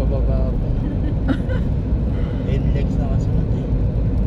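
Steady low rumble of road and engine noise inside a moving car's cabin, with faint snatches of voices over it.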